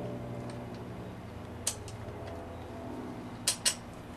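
Light metallic clicks of a fine-thread bolt being handled against a metal seat-belt L-bracket: one about halfway in and two close together near the end, over a steady low hum.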